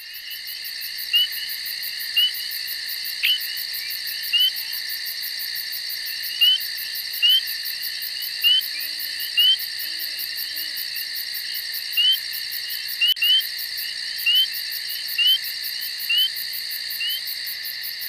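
Steady chorus of insects, a finely pulsing high trill, with short rising chirps repeating irregularly about once a second.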